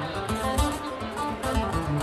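Acoustic guitar played solo, a quick run of picked single notes.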